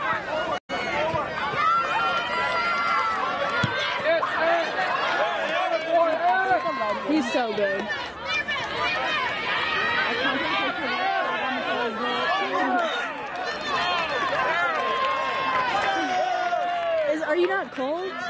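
Many voices talking and calling out over one another at once, with no single clear speaker: sideline chatter and shouting at a soccer game. The sound drops out for a split second about half a second in.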